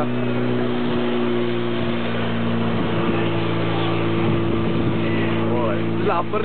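Fire pump engine running steadily at speed, its pitch shifting a little about three seconds in, over the hiss of water jets from two hoses under pressure.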